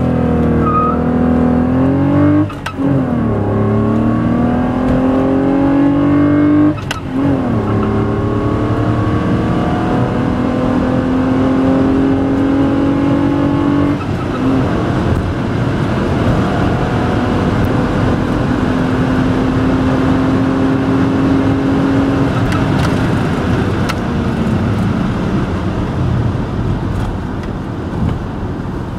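Volkswagen Golf Mk3 VR6's 2.8-litre 12-valve V6, heard from inside the cabin, accelerating hard. Its pitch climbs through each gear and drops at three upshifts, about 2.5, 7 and 14 seconds in. After the last shift the note rises slowly under growing road and wind noise and eases off near the end.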